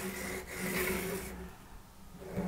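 Soft pastel stick scratching across textured pastel paper as lines are drawn, fading out about a second and a half in.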